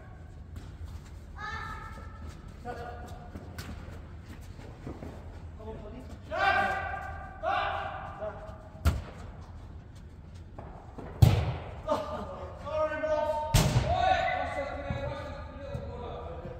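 A football being kicked on an indoor pitch, three sharp thuds, the loudest about eleven seconds in, echoing in a large hall, among players' shouted calls.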